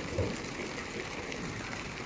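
Shallow stream running over stones, a steady rush of water.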